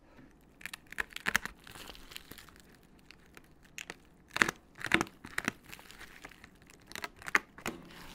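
Clear plastic wrapping film crinkling and tearing as hands pick at it and pull it off a wrapped instrument. Irregular crackles, with the loudest sharp rips around the middle and near the end.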